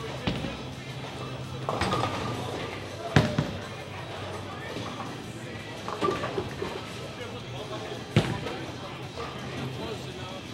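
Bowling alley: two sharp knocks, about three and eight seconds in, from a bowling ball and pins, over background music and indistinct voices.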